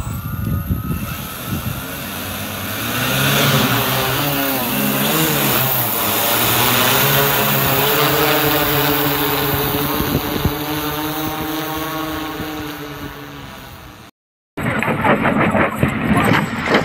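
Multi-rotor drone's propellers humming, several tones rising and falling together as the motors change speed, then growing fainter as it climbs away. After a brief break near the end, a rapid clatter starts.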